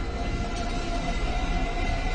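Ominous background music: a low rumbling drone under held tones.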